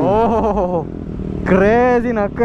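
Voices talking over the low, steady rumble of motorcycle engines running.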